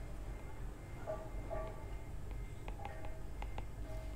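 Quiet background noise: a low steady hum with a few faint ticks and faint short tones.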